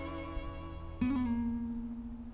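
Background music: acoustic guitar notes ringing, with a new note plucked about a second in.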